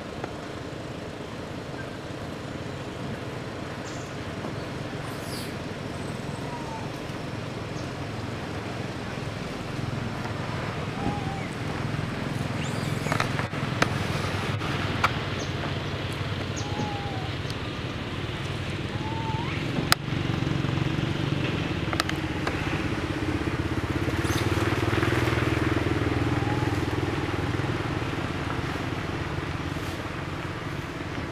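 A steady low engine hum that swells louder for a few seconds about two-thirds of the way in, with a few faint short rising chirps and scattered clicks over it.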